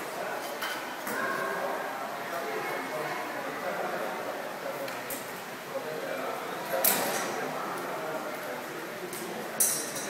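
Indistinct voices echoing in a large hall, with two sharp clinks in the second half.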